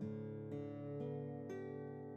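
Background music: an acoustic guitar picking ringing notes, about two a second, each left to ring and fade.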